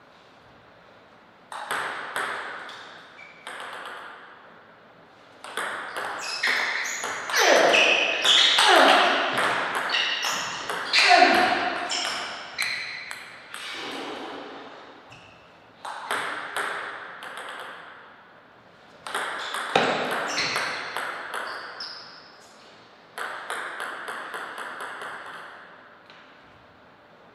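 Table tennis ball clicking off rackets and the table in several bursts of quick, sharp taps with a ringing edge. Short falling-pitch sounds are mixed in during the loudest stretch around the middle.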